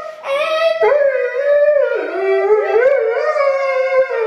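Doberman howling in long, continuous notes whose pitch wavers and slides up and down, starting just after a brief pause.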